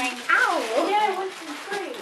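Indistinct speech, a voice rising and falling in pitch, fading out in the second half.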